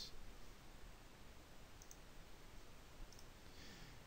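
Faint computer mouse clicks, a few small ticks about two and three seconds in, over near-silent room tone.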